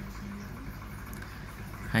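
A steady low background hum in a pause between a man's talk; his voice trails off at the start and comes back at the very end.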